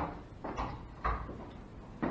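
Footsteps on the workshop floor: two soft thumps about half a second apart in a small, quiet room.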